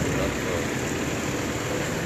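Steady street noise of a vehicle running, with faint voices of bystanders in the background.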